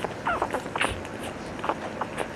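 One-week-old Cavalier King Charles Spaniel puppies nursing: a brief squeak from a puppy about a third of a second in, among scattered soft clicks of suckling.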